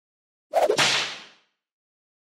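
A whoosh sound effect marking a transition to a new section title card: a sudden swish about half a second in that fades out over about a second.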